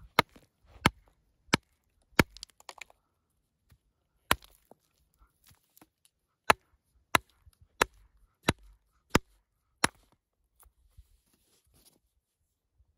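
Steel rock hammer striking a hand-held stone concretion, about eleven sharp separate blows, evenly paced in the second half, cracking it open to reveal the fossil inside.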